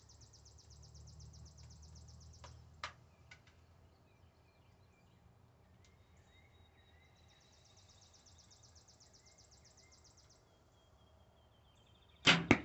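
Near silence with a faint outdoor background: a high, rapidly pulsing insect-like trill that stops and starts again later, and faint bird chirps. There is one light click about three seconds in while the compound bow is being readied.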